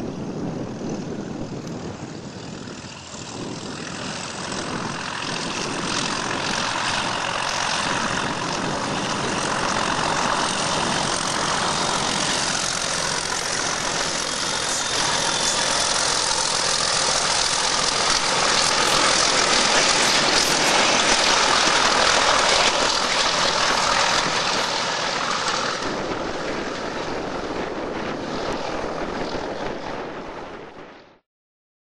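Two Class 31 diesel locomotives, with English Electric V12 engines, working a train past at close range. The engine noise builds steadily as they approach, is loudest about two-thirds of the way through, then eases as they run away.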